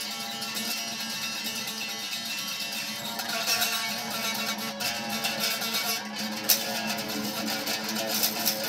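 Electric guitar played with fast, continuous picking, a dense stream of notes in a black metal style.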